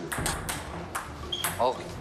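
Table tennis rally: a celluloid ball being hit back and forth, a quick run of sharp clicks off the paddles and the table.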